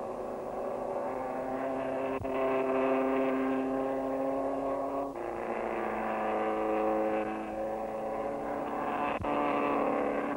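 Pre-war racing car engines, an MG and a Riley, running hard at steady high revs. The engine note jumps abruptly to a new pitch at sharp cuts about two, five and nine seconds in.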